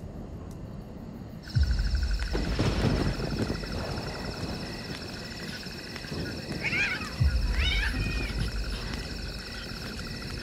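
A night ambience of insects chirping begins about 1.5 s in and keeps up a steady pulsing drone. Two deep low thumps come with it, one as it begins and one about 7 s in, and a pair of short wavering animal cries sounds around 7 s.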